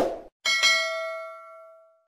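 Subscribe-button animation sound effect: the tail of a short whoosh, then a bright bell-like ding about half a second in that rings on and fades away over about a second and a half.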